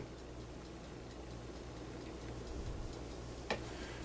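Quiet room with a low steady hum and faint rustling as cloth is handled and lined up for pinning. One short sharp click about three and a half seconds in.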